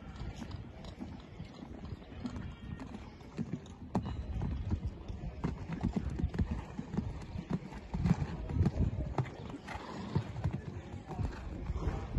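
Hoofbeats of a horse cantering on a sand arena: dull, rhythmic thuds that grow louder about four seconds in.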